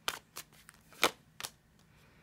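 Tarot deck being shuffled by hand: a few short, sharp card slaps and flicks, the loudest about a second in.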